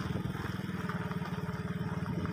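Small motorcycle engine running steadily as the bike rides along, an even, rapid pulse.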